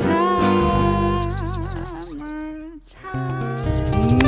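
Live acoustic band with guitars and a woman singing, who holds a long note with wide vibrato. The music dies away to a brief lull just before three seconds in, then starts up again.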